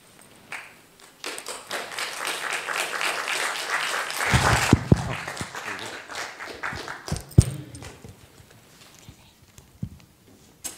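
Audience applauding, starting about a second in, swelling, and dying away by about eight seconds, with a few dull low thumps mixed in.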